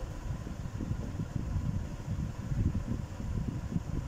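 Low, steady rumble of a running electric fan.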